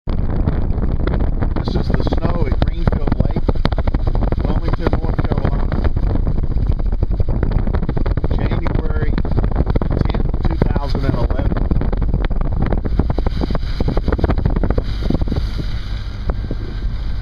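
Loud, steady rumble of a car driving, heard from inside the cabin, with wind buffeting the microphone and many small clicks and knocks throughout.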